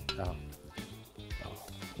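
Soft background music with steady low notes, with a brief spoken 'aah' at the start.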